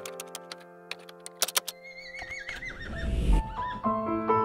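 Soft piano music with a horse whinnying about halfway through: a wavering call that falls in pitch, ending in a short low rush of breath.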